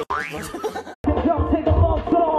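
A comedic 'boing' sound effect rising in pitch over laughter, then an abrupt cut about a second in to loud pop music with a strong beat.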